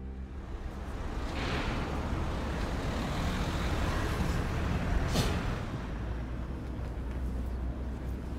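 City street traffic: vehicles passing over a steady low rumble, with a short sharp hiss about five seconds in.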